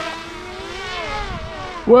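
The propellers of a four-motor quadrotor-biplane VTOL drone whining in flight, several tones wavering up and down in pitch together over a rushing hiss. The wavering is the flight controller varying motor speed to keep the craft stable.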